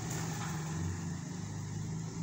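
A steady low hum with no speech.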